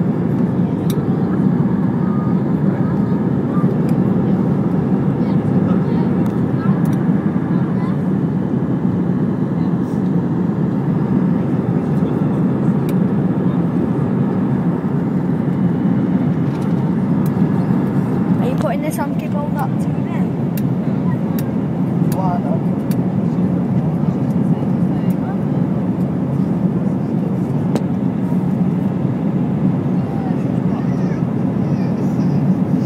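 Steady roar of an Airbus jet airliner's engines and airflow, heard from inside the cabin as it climbs after takeoff.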